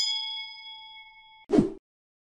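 A bright bell-like 'ding' sound effect for the subscribe notification bell, several tones struck at once and fading away over about a second and a half. A short burst of noise follows about a second and a half in.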